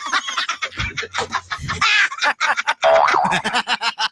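Produced radio broadcast audio: rapid, chopped voice fragments mixed with sound effects and sliding pitch glides, as in a station jingle or comedy spot.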